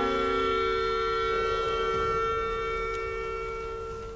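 Orchestra holding a sustained chord; the lower notes drop out about a second in, leaving a single held tone that slowly fades.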